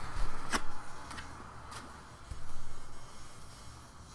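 Trading cards being handled and set down on a felt-covered table: one sharp tick about half a second in and a couple of fainter ticks after, over a low steady hum.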